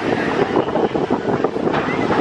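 Manta, a B&M flying roller coaster: the train running along its steel track, a steady rumble with fast wheel clatter as it moves away.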